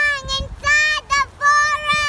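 A young girl singing out four long, held notes at nearly the same high pitch, with short breaks between them.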